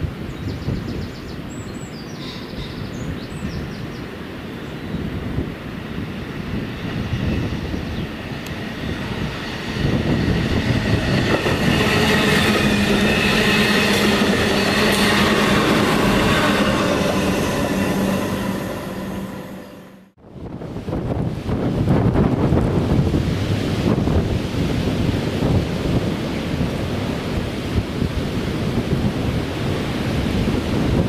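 Diesel engine of a Robel rail maintenance vehicle running as it approaches, growing louder from about ten seconds in with a steady low hum. The sound fades out suddenly about two-thirds of the way through. After that, a Class 70 diesel freight locomotive approaches with a low rumble, with wind on the microphone.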